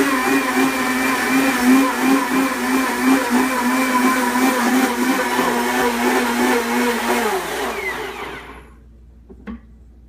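Blendtec countertop blender running at speed, chopping wheatgrass in a little water, with a steady motor whine. About seven seconds in it switches off and winds down, its pitch falling, and a small click follows near the end.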